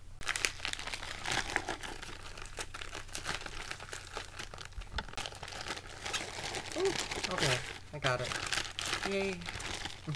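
Plastic bubble packaging crinkling and crackling as it is pulled apart and handled, in a continuous irregular rustle.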